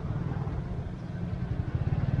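Low rumble of a nearby motor vehicle engine in street traffic, growing louder near the end.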